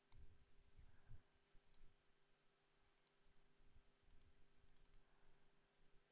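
Near silence with a few faint computer mouse clicks spread through, three in quick succession near the end.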